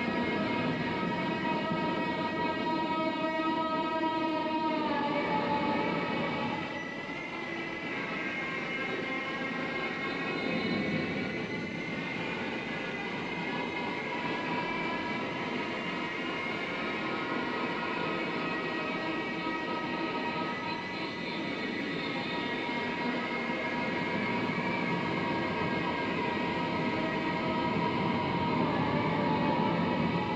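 Amplified violin built from decommissioned gun parts, bowed in long droning notes with several pitches sounding together. About five seconds in the notes slide down in pitch. A rougher, scratchier stretch of bowing follows, then held notes return.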